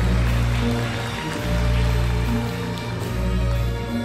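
Slow jazz ballad played live by a jazz quartet with a chamber string orchestra: long, slowly changing double-bass notes under held chords, with a soft hissing shimmer on top.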